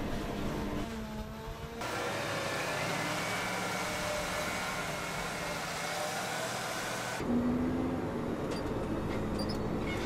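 Heavy farm machinery running at work: a Claas self-propelled forage harvester chopping alfalfa and a John Deere tractor packing the silage pile. The sound changes abruptly twice: a steady engine hum, then from about two seconds in a loud, even rushing noise with a faint wavering engine note, then a steady engine hum again for the last few seconds.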